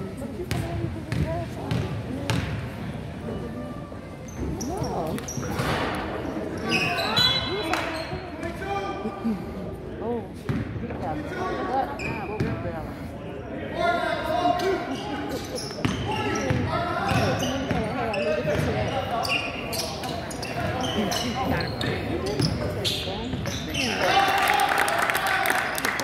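Basketball bouncing on a hardwood gym floor during play, with players and spectators shouting in a large gym.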